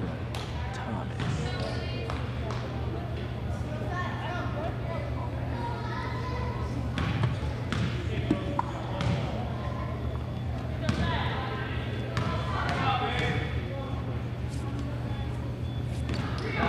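Gymnasium ambience during a free throw: a basketball bouncing on the hardwood floor a few times, with players and spectators talking in the background over a steady low hum.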